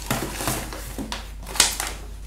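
Thin, soft plastic sheet (a plastic file divider) being handled, rustling and crackling in irregular bursts, with the sharpest crackle about one and a half seconds in.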